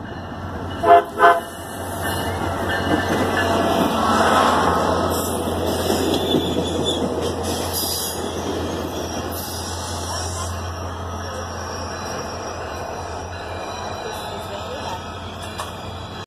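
A SunRail commuter train sounds two short horn toots about a second in, then rolls past over the crossing. Its engine and wheel noise are loudest about four seconds in and fade slowly as the cars go by.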